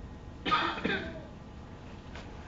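A short cough about half a second in.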